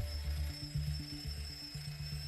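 Quiet background music with a low bass line moving from note to note, and no speech over it.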